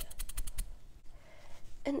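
Makeup brush working in a plastic powder compact as it picks up blush: a quick run of light clicks and taps in the first half-second, then quieter brushing.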